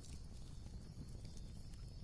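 Faint background ambience: a low, uneven rumble with a few soft scattered clicks.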